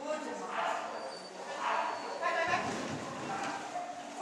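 A handler's voice calling several short commands to a dog running an agility course.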